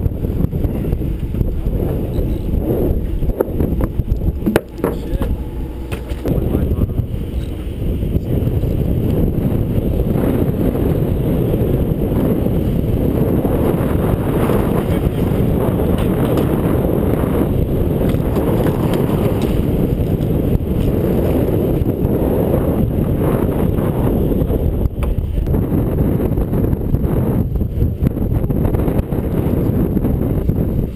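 Steady low rumble of wind on the microphone aboard a fishing boat, with a single sharp knock a few seconds in.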